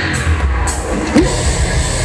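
Metalcore band playing live and loud: distorted electric guitars over a fast, dense drum kit, with no break.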